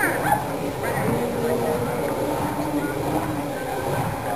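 People talking quietly in the background, with a few short high yips right at the start.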